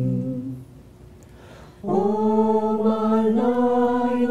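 Mixed men's and women's choir singing a cappella. A held chord ends about half a second in, there is a short pause, and then the voices come in together on a new sustained chord a little under two seconds in.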